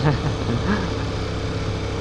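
Motorcycle engine running steadily at cruising speed, with wind and road noise.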